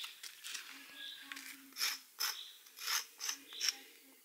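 Sidewalk chalk scraping on concrete paving stones as a tree is drawn, in a series of short strokes, the clearest about two seconds in and around three seconds.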